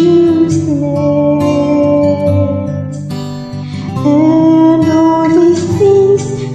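A woman singing a slow worship song over acoustic guitar accompaniment, holding long notes, with a brief pause between phrases about halfway through.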